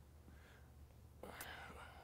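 Near silence with a low steady room hum; a little past the middle a faint whispered, breathy voice sound comes in.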